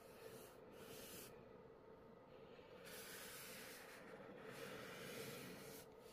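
Faint hissing rustle of a plastic backing liner being peeled off a film phone screen protector, in two stretches, the second lasting about three seconds, over a steady low hum.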